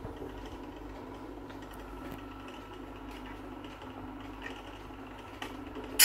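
Wind-up horn gramophone's spring motor and turntable running on with the soundbox lifted off the record: a faint steady mechanical whir with a few light ticks. A brief louder noise comes right at the end.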